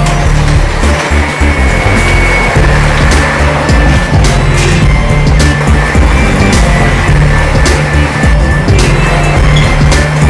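Rock music soundtrack over the rumble of office-chair casters rolling fast along a hard hallway floor.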